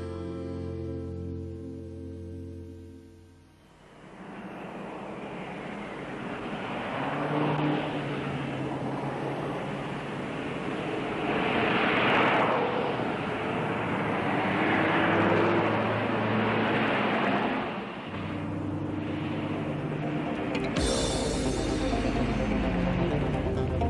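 A held musical chord for about the first three seconds, then road traffic: cars driving past, the noise swelling and fading twice, with soft music continuing underneath.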